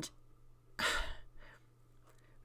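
A woman's audible breath, a short sigh about a second in, during a pause in her talk.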